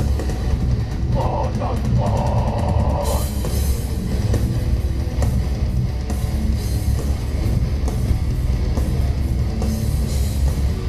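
Live death metal band playing loudly: distorted electric guitars and bass over fast, dense drumming.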